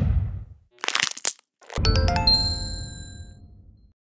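Channel outro sting of sound effects: a swoosh dying away, a short crackle about a second in, then a low hit with bright chiming tones that ring out and fade over about two seconds.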